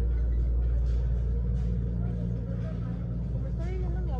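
Steady low rumble of the supermarket's background hum, with a young child's high voice calling out briefly near the end.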